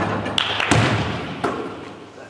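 Basketball striking the hoop and then bouncing on a gym floor: a few thuds under a second apart, echoing in the hall.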